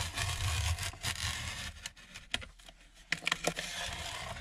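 Utility knife blade scraping along a ruler as it cuts through a hardcover book's cover board at the spine, a steady rasping cut for about the first two seconds, then a few light clicks and taps.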